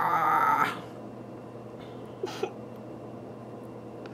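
A person laughing, which stops within the first second, then quiet room tone with a faint steady hum and two soft clicks about two seconds in.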